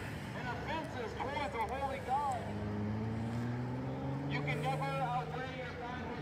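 A car driving past on the street, its engine note rising steadily from about two seconds in as it accelerates. Distant voices are heard over and around it.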